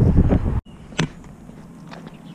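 Wind blowing across an action camera's microphone, loud and heaviest in the bass, cut off abruptly about half a second in. It is followed by quieter outdoor background with a single sharp click about a second in.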